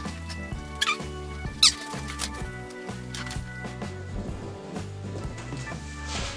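Background music, with two short high squeaks of an inflated rubber balloon being handled, about a second in and again just under a second later.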